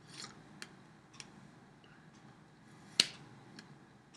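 Hands tapping and brushing together while signing: a few soft clicks and one sharp clap about three seconds in.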